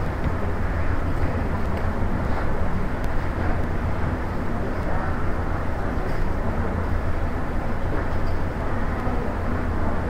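Steady low hum and hiss of background noise, with a few faint clicks.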